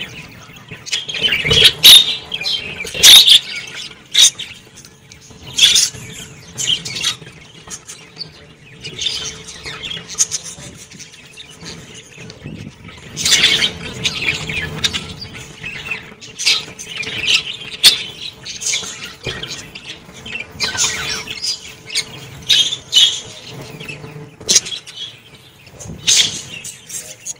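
A flock of budgerigars chirping and chattering, with loud sharp calls every second or two. Wings flutter now and then as birds fly about the cage.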